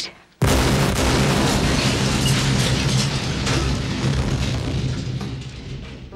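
Film sound effect of an aircraft exploding in midair: a sudden loud blast about half a second in, then a sustained rumble with crackling debris and a low drone that eases slightly near the end.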